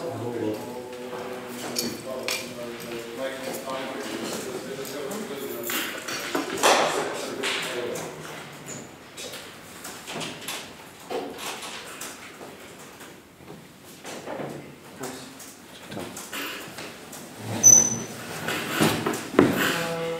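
Indistinct voices talking away from the microphone, with scattered knocks, bumps and clicks of people moving about, and one short high beep near the end.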